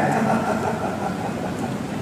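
Steady background noise of a hall during a pause in speech: an even hiss and hum with no clear voice.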